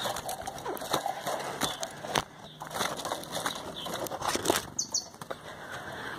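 Light clicks and knocks of a wood-and-wire trap cage being handled and opened, with the fluttering wingbeats of a rufous-collared sparrow (chingolo) flying out as it is released.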